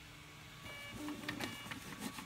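Ultimaker 3 3D printer's stepper motors whining briefly as the printer moves the print head and build plate to the next leveling corner, over a steady low hum, with a few light clicks of handling.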